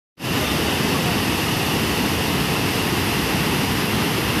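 Heavy rain falling: a steady, even rushing hiss that starts abruptly and holds at one level.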